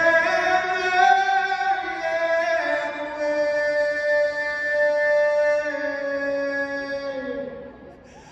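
A solo singer performing an anthem a cappella, with no instruments: a few held notes, then one long note sustained for about four seconds that fades out just before the end.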